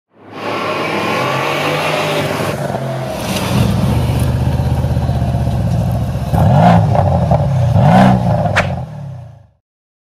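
Car engine running, then revved twice near the end, each rev rising and falling in pitch, before fading out.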